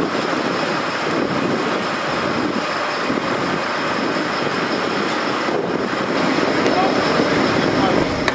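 Steady running noise of a fire engine standing at the scene, with indistinct voices mixed in.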